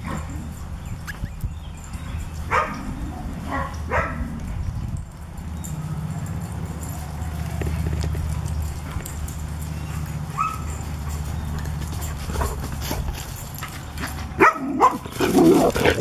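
Standard poodles barking at squirrels: a few short barks in the first seconds and one around the middle, then a run of loud barks in quick succession near the end, over a steady low rumble.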